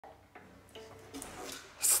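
Faint rubbing and handling noises as a child shifts a cello and bow, followed near the end by the child's voice starting to say "Study".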